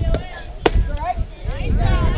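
A fastpitch softball popping into the catcher's leather mitt once, a sharp crack about two-thirds of a second in, with voices calling around it.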